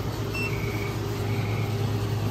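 A steady low mechanical hum fills the room, with a brief, faint high beep about half a second in.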